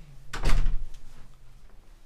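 A door shutting with a single heavy thump about half a second in, ringing briefly in a small room.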